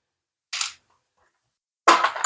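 A single short camera-shutter click, an editing sound effect, about half a second in; a sharp knock begins right at the end.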